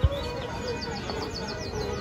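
Rapid, high bird-like chirping: a quick run of short falling chirps, about ten a second, from about halfway in, which leaves a listener asking whether it is a real bird. A sharp thump right at the start.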